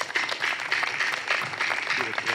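Audience applauding: many hands clapping together.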